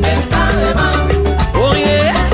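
Cuban timba (salsa) band playing a recorded song, with a repeating bass line under percussion and other instruments.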